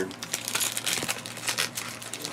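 Trading cards being handled and sorted by hand, with light irregular rustling and crinkling of card stock and plastic.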